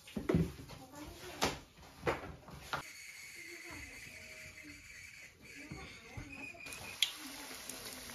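A cleaver chopping through a slab of dough onto a plastic cutting board: four sharp knocks in the first three seconds, the first the loudest. After that a steady faint hiss with a thin high tone runs on, under low voices.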